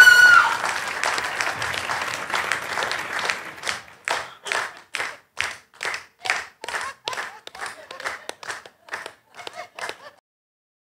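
A woman's short, high-pitched shout at the very start, then studio audience applause. After about three and a half seconds the applause settles into rhythmic clapping in unison, about two and a half claps a second.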